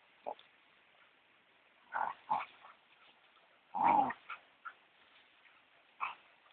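A dog barking in a few short, separate bursts: one faint one near the start, two about two seconds in, and the loudest about four seconds in, followed by two quick small ones.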